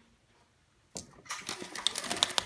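After about a second of near silence, a single click, then a dense clatter of small clicks and rustling: handling noise as the phone rubs and knocks against wooden window shutter slats.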